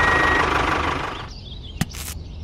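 Tractor engine running steadily, with a brief high beep at the start, fading out just past a second in. Near the end comes one sharp click.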